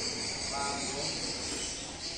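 Steady high-pitched insect trilling, with faint voices in the background.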